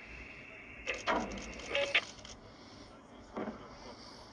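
Two-way radio transmissions: short bursts of crackle about a second in and an electronic beep near two seconds. A brief dull thud follows about three and a half seconds in.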